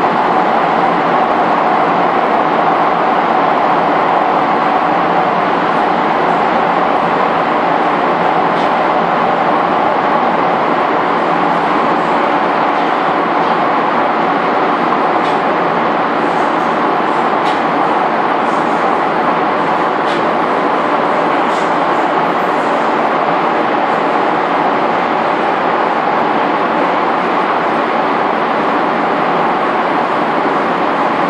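Docklands Light Railway train running at steady speed through a tunnel, heard from inside the carriage as a loud, even rumble of wheels and motors, with a few faint ticks midway through.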